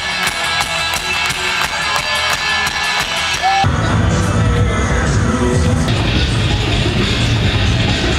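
Live rock band playing loud, with electric guitar and a steady drum beat. About three and a half seconds in it cuts abruptly to a deep, bass-heavy rumble with little treble.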